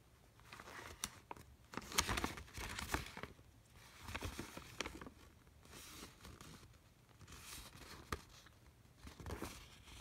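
A folded paper instruction leaflet rustling and crinkling as it is handled and unfolded, in irregular bursts with a few sharp crackles, the loudest about two seconds in.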